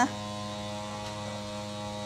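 Steady electrical mains hum with a buzzy ladder of overtones, unchanging throughout.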